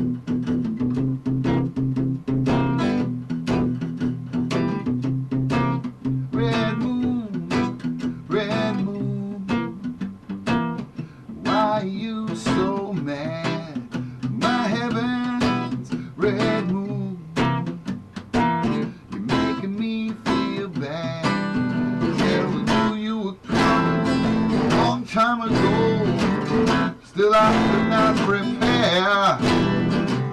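Acoustic guitar strummed and picked in a steady rhythm: the instrumental opening of a song, before the sung verse.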